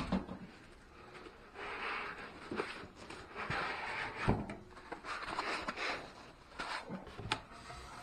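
Packing being handled: a plastic-wrapped power inverter and its foam packing lifted and pulled out of a cardboard box, with rustling and scraping and a few knocks, the loudest about four seconds in.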